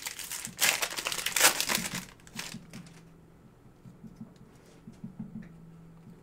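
Foil wrapper of a trading-card pack crinkling and tearing as it is opened, for about two seconds, followed by a few faint ticks of cards being handled.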